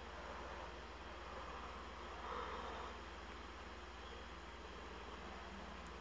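Faint, soft cutting of EVA foam sheet with scissors, over a steady background hiss and low hum.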